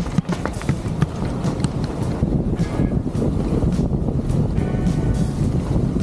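Wind rumbling on the microphone while a 26-inch hardtail mountain bike rolls fast down a gravel track, its tyres crunching and the frame and parts clattering over the stones. The front fork does little, so the jolts come through as constant rattling.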